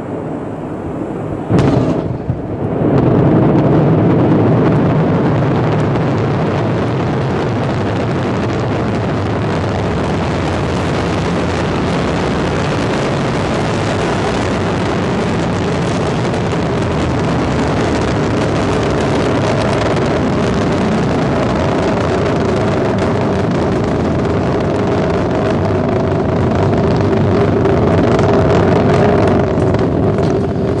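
Ariane 5 rocket lifting off, its Vulcain main engine and two solid-fuel boosters making a loud, continuous roar. The roar comes in suddenly about a second and a half in, swells a second later and then holds steady as the rocket climbs.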